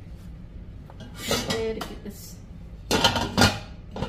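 Kitchen utensils and pans clattering and clinking as things on the counter are cleared away, in two bursts: one about a second in, with a ringing tone, and a louder one near the end.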